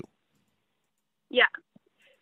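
Speech only: a single short spoken "yeah" after about a second of silence, followed by a couple of faint clicks.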